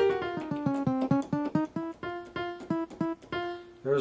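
Yamaha Piaggero NP-V80 digital keyboard played in split mode, with a bass voice for the left hand and a piano voice for the right: a quick run of single notes, several a second, stepping down in pitch over the first second or so and then staying around one register.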